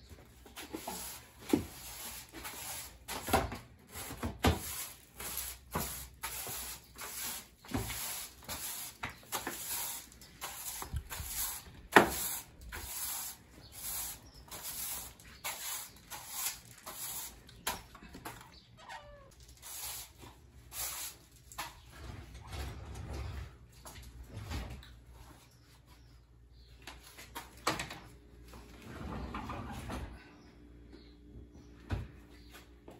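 A broom sweeping a bare hard floor in short repeated strokes, about two a second, with one sharp knock about twelve seconds in.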